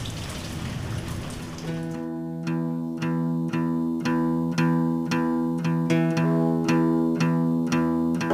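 A rain-like hiss fading away over the first two seconds, then a guitar picking a repeated pattern of sustained notes, about two plucks a second, opening a rock song.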